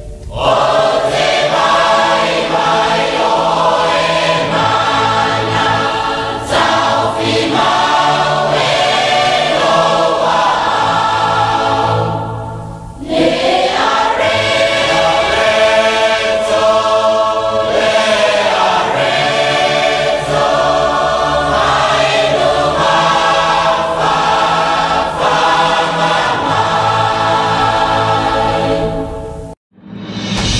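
A choir singing with musical backing, in sustained sung phrases, with a short break about twelve seconds in before the next phrase begins.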